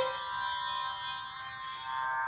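A boy's held sung note in Revathi raga breaks off at the very start, leaving a steady Carnatic drone accompaniment sounding on its own.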